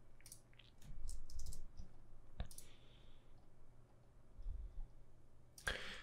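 A few faint, scattered keystrokes on a computer keyboard, with one sharper click about halfway through.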